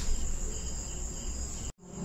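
Insects, most likely crickets, chirring steadily with a continuous high-pitched tone, over a faint background hiss. The sound cuts off abruptly to silence for a moment near the end.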